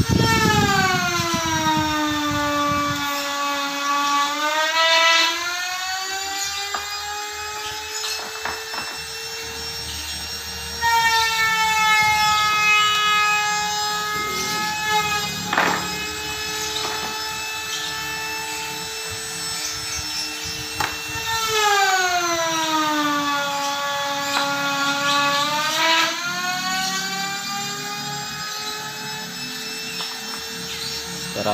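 A droning pitched tone, rich in overtones, that slides down in pitch, swings back up and holds steady, repeating about every ten seconds, with a few short knocks in between.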